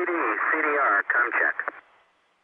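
Only speech: a short voice call over the radio communications loop, thin and narrow-sounding, breaking off shortly before the end.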